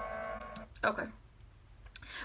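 A woman's voice says "okay" about a second in, after a steady held tone that stops early on; then quiet room tone.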